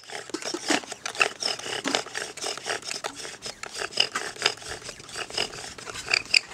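Bow drill: a wooden spindle grinding in a wooden hearth board as the bow is sawn quickly back and forth, a rhythmic scraping of about four strokes a second with short high squeaks. The friction has the hearth just starting to smoke.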